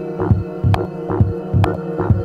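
Techno track in a DJ mix: a steady four-on-the-floor kick drum at about 130 beats a minute, with a sharp hit on every second beat over a held droning synth tone.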